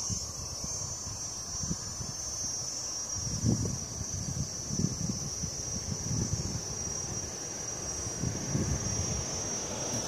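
Wind buffeting the microphone in irregular gusts, over a steady high-pitched drone of insects.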